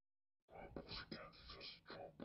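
Faint, unintelligible whispering voice, starting about half a second in after a moment of dead silence.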